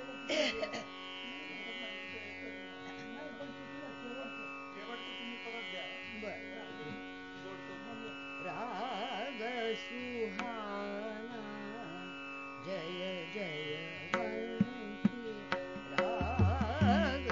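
Hindustani classical female vocal singing slow, ornamented melodic phrases with wide oscillating turns over a steady tanpura drone. A few sharp percussive strokes come in near the end.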